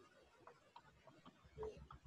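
Near silence on the call line: faint room tone with a few scattered faint clicks and one brief faint sound about one and a half seconds in.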